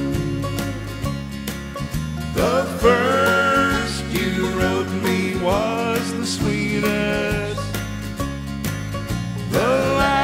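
Instrumental break in a country song: a lead instrument plays notes that slide up into each new phrase, about every three seconds, over a steady guitar and bass accompaniment.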